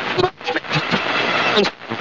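A crowd of many people talking and shouting over each other in a dense, continuous babble.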